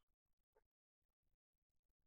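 Near silence: a pause between speakers on a video call, with the audio gated to nothing.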